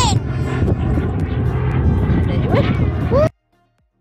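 Wind buffeting a phone microphone, a loud steady low rumble, with brief voices over it; it cuts off suddenly a little over three seconds in.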